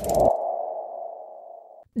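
An electronic sound-effect sting: a short low hit, then a ringing, sonar-like tone that fades away over nearly two seconds and cuts off just before the end.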